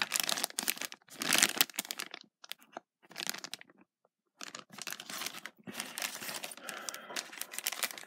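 Sealed clear plastic Happy Meal toy bags crinkling as they are handled and turned over, in irregular rustling bursts with a short pause about halfway through.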